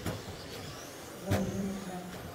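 Electric RC stock trucks running on an indoor carpet track. A sharp knock comes right at the start and another about a second and a half in, followed by a steady low hum.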